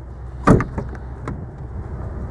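Rear door of a 2008 Jeep Wrangler Unlimited being unlatched and opened: one sharp latch clunk about half a second in, followed by a couple of lighter clicks.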